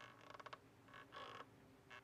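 Near silence, with a few faint creaks made of rapid small clicks.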